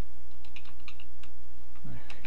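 Computer keyboard typing: a quick run of keystrokes in the first second or so, over a steady low electrical hum.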